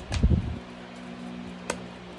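Hands shuffling a deck of cards, with a short run of low thumps in the first half-second and a single sharp click about three-quarters of the way through, over a steady low hum.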